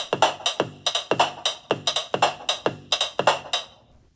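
Artiphon Orba 1 handheld synth playing its built-in drum kit as its touch pads are tapped: a quick, even run of electronic drum hits, about five a second, stopping shortly before the end. Picked up by an iPhone microphone.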